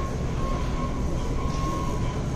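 Steady background rumble of a large warehouse store, with a faint steady high hum that fades in and out.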